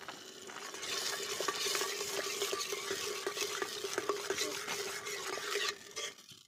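A metal ladle stirring a bubbling masala gravy in an aluminium pot: a steady sizzling hiss with small scrapes and clinks of the ladle against the pot. The hiss swells about a second in and drops away just before the end.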